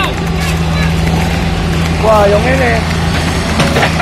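An engine idling steadily with a low, constant hum, with people talking indistinctly over it about two seconds in.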